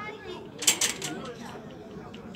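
Players' voices calling out on the pitch, with a quick run of three or four sharp noise bursts a little after half a second in.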